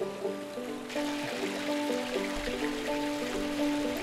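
Background music with slow, held notes, over a steady hiss of running water that comes in about a second in.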